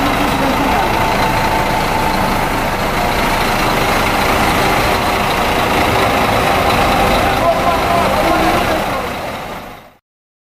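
Diesel bus engines idling in a bus yard, a steady running noise with voices mixed in, fading out over the last second.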